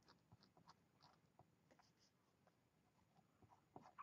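Faint sound of a wooden pencil writing on paper, in short irregular strokes.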